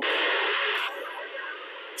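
TIDRADIO TD-H3 handheld transceiver with its squelch set to zero, open-squelch static hissing from its speaker because all noise filtering is off. The hiss drops in level about a second in and carries on quieter.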